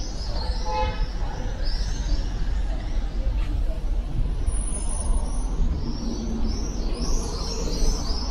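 City street traffic with a steady low rumble, and birds in the trees chirping over and over. A car horn gives a short toot about a second in.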